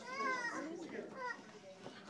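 Children's voices: a high child's voice calls out at the start, followed by more scattered children's chatter.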